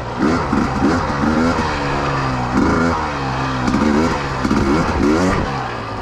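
Husqvarna TE300i's 300cc two-stroke single-cylinder engine running under the rider, revving up and falling back repeatedly, about once a second.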